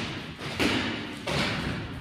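Thuds from two boxers sparring, gloved punches landing at close range: a couple of heavy hits about two-thirds of a second apart, each ringing briefly in a large gym hall.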